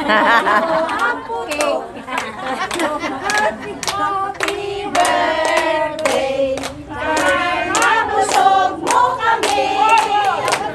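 A group of women singing together while clapping in a steady rhythm, about two claps a second, with laughter mixed in.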